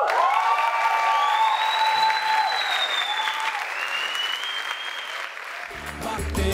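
Audience applauding and cheering, with long held shouts over the clapping. The applause dies down toward the end, and music starts just before the end.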